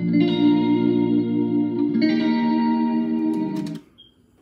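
Surf guitar music with heavy echo playing from a CD through a Naxa compact stereo's speakers, the chords changing about every two seconds. It cuts off suddenly shortly before the end as the player is stopped.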